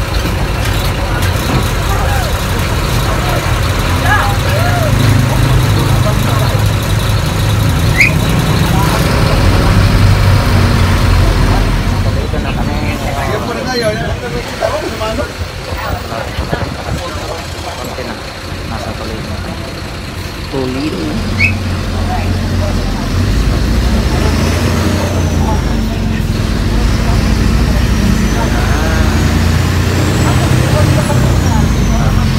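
Bus engine running with road and rattle noise, heard from inside the passenger cabin. It eases off for a few seconds around the middle, then builds again.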